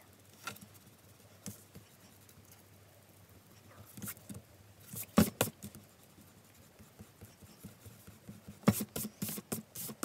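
Rubber eraser rubbing pencil lines off paper in short scratchy runs of strokes, the loudest around the middle and a quick run of strokes near the end, with the paper rustling under the hand.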